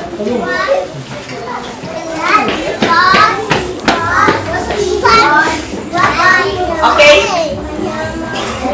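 A room full of young children chattering and calling out at once, many high voices overlapping.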